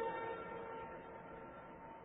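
The last held note of a sung Islamic call to prayer (the Maghrib adhan) dying away, its steady tone fading over the first second and a half until only a faint hiss remains.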